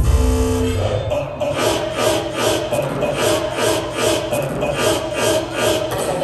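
Electronic dance music (dubstep) from a DJ set, played loud over a club sound system. It cuts back in sharply at the start after a short dropout, then runs as an even beat of short drum hits, about three a second, with the bass thinned out.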